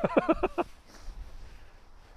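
A person laughing briefly, a quick run of about five short laughs in the first half second or so, then only faint outdoor background.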